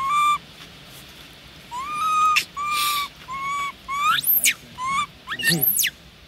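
Long-tailed macaque giving a string of about seven clear, high coo calls, each short and fairly steady or slightly rising. The two calls near the end sweep sharply upward into shrill squeals.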